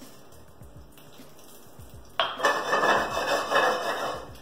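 Fennel seeds frying in hot olive oil in a stainless-steel skillet: quiet at first, then a sudden loud burst of sizzling about two seconds in that lasts about two seconds.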